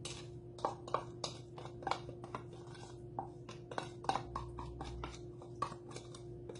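Wooden spoon tapping and scraping against a plastic measuring cup, knocking grated carrots out into a metal mixing bowl: a quick, irregular series of sharp taps starting about half a second in.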